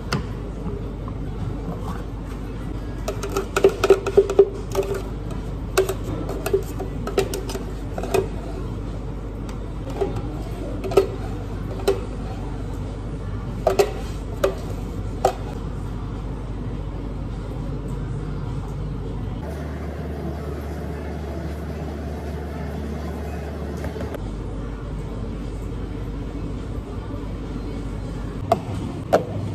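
Scattered knocks and clinks of a plastic blender jar being handled, with blended ice slush scraped and poured out using a spatula, over a steady background hum. The clinks come thickest in the first half and stop after about 15 seconds.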